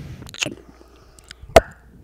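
A single sharp knock about a second and a half in, preceded by a softer click and a few faint ticks.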